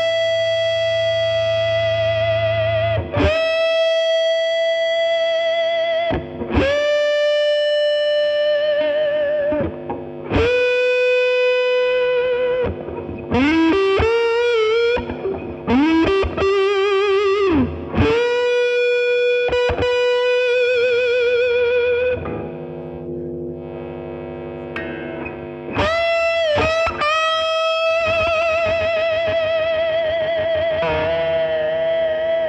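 Overdriven electric guitar (PRS) played on the neck pickup with the tone rolled off: a slow lead line of long sustained single notes, each held for a few seconds and finished with vibrato, with string bends around the middle and a softer passage about two-thirds of the way through.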